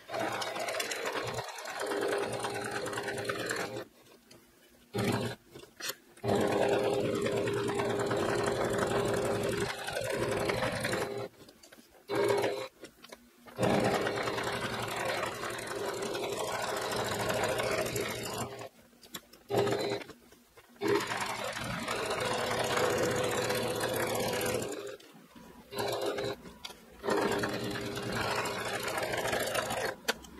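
Singer electric sewing machine top-stitching around the edge of a fabric coaster, running in stretches of a few seconds with a steady motor hum and stopping briefly several times before starting again.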